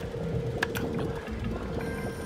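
Invaders Return from the Planet Moolah video slot machine playing its electronic sounds while its symbols cascade down the reels: one steady held tone with a few short clicks.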